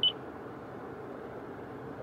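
A single short high beep from a 2021 Toyota Corolla's touchscreen infotainment unit as it is tapped, then a steady low background hush.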